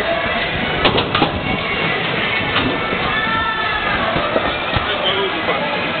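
Busy warehouse din: music playing under indistinct voices, with a few sharp knocks about a second in.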